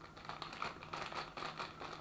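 Faint rustling and crackling: a paper spice packet of coriander shaken over a wok, the spice landing in hot vegetable oil that is just starting to bubble and sizzle.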